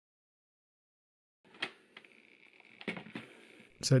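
Silence at first. From about a second and a half in, faint handling noise with a few sharp clicks, the clearest two about a second apart: a hard plastic laptop case clicking into place on the bottom of a MacBook Pro.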